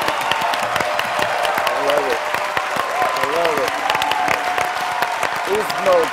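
Studio audience applauding steadily, with a few voices calling out over the clapping.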